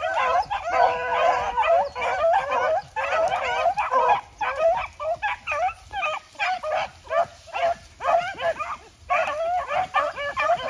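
A pack of beagles baying together as they run a rabbit's scent trail, many voices overlapping.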